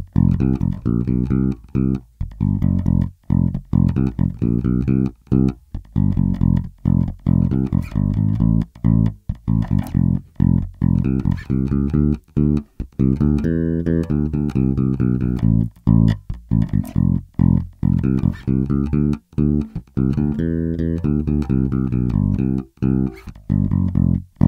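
Warwick RockBass Corvette electric bass played fingerstyle, a repeating groove of short, clipped notes with brief gaps between them. Both pickups are on and the bass and treble controls are turned fully up.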